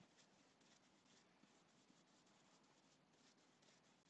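Faint scratchy strokes of a paintbrush working paint into a raised stencil, about four or five quick strokes a second, as the colours are blended; otherwise near silence.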